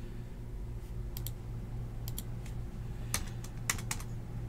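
Computer keyboard keys clicked in short irregular clusters, a pair about a second in and a quicker run near the end, over a steady low hum.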